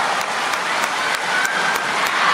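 Arena crowd applauding a won point, with a few sharp individual claps, about three a second, standing out from the general clapping.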